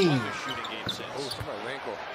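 Basketball bouncing on a hardwood court, heard through the game broadcast with a commentator talking underneath.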